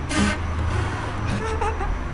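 Steady low engine rumble of a vehicle running nearby, with a short breathy puff of air right at the start.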